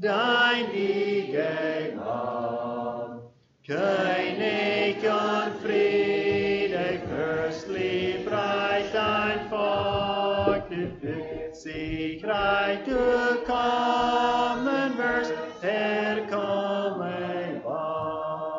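Congregation singing a hymn a cappella, in long sustained phrases with a short break between lines about three seconds in and another near twelve seconds.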